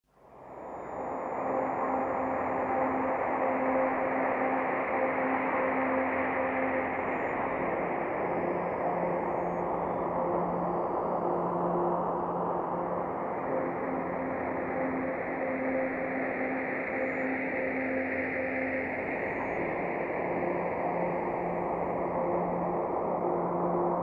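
Opening of an ambient electronic track: a hissing wash of synthesized noise fades in over about a second, under held low drone notes. The drone notes alternate between two pitches every few seconds, with no beat.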